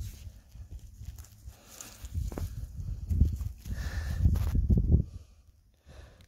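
Soft knocks and rustling in dry grass and leaf litter, with low bumps from a hand-held microphone being handled, as a hand moves in through the litter. It comes in uneven stretches and goes quiet shortly before the end.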